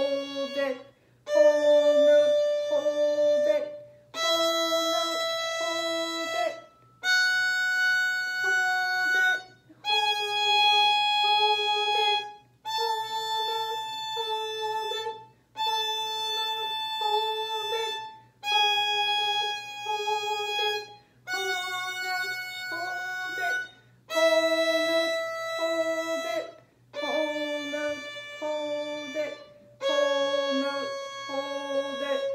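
Solo violin playing the A major scale in slow whole notes, one long held bow stroke per note with a short break between, climbing to the top A about halfway and stepping back down.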